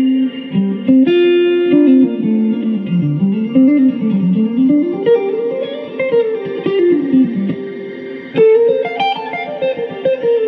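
Telecaster-style electric guitar played through a Mesa/Boogie California Tweed amp, with a Fractal Audio FM3 in the amp's effects loop adding delay and reverb. Single-note lines climb and fall in pitch, notes overlapping as they ring on, with a sharper picked attack near the end.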